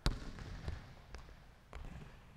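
Basketball bouncing on a hardwood gym floor: one sharp bounce at the start, the loudest sound, followed by three fainter thumps about half a second apart.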